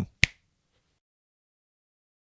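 A single short, sharp click about a quarter of a second in, after which the track goes dead silent.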